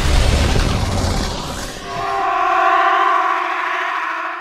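Movie-trailer sound design: a deep boom rumbling away, then a sustained chord of several steady tones that swells in about halfway through and holds before fading out.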